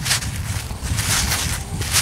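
Irregular rustling and scuffing of a gloved hand handling a small coin close to the microphone, over a low wind rumble on the mic.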